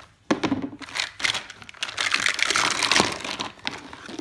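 Crinkling, crackling plastic packaging as a toy set is opened, with sharp clicks of hard plastic pieces among it.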